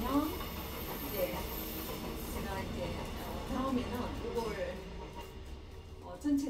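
Indistinct, low speech in short snatches over a steady low hum.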